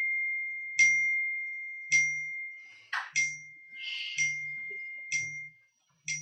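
A smartphone chiming over and over: a bright, bell-like note about once a second, each ringing on until the next.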